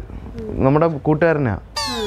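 A man's voice in a drawn-out, wavering tone. Near the end comes a short, high falling glide with many overtones.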